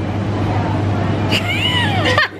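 Metal shopping trolley rolling across a hard supermarket floor: a steady rolling noise of its wheels. Near the end there is a brief, high squeal that falls in pitch.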